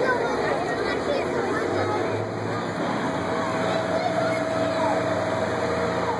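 A vehicle engine idling, with a steady low hum that comes in about two seconds in and a steady higher tone from about three seconds, under background voices of people talking.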